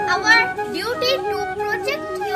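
A boy's voice speaking over soft background music with steady held notes.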